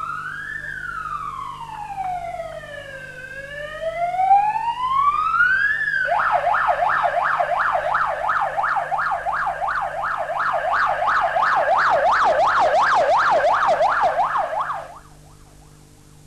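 A police-style vehicle siren sounding a slow rising-and-falling wail, then switching about six seconds in to a louder, fast yelp of roughly three to four sweeps a second, which cuts off suddenly near the end.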